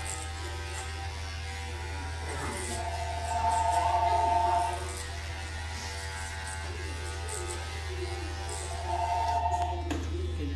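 Electric hair clippers buzzing steadily as they cut short hair at the back of the neck, with music playing in the background.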